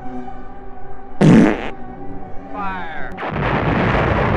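A sudden explosion's deep rumble begins about three seconds in and continues. Before it, music plays, with a short, very loud low burst about a second in and a brief wavering sound just before the blast.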